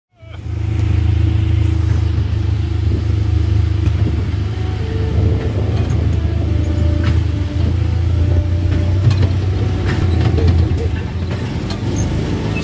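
Small ride car's engine running steadily with a low, even hum, heard from on board.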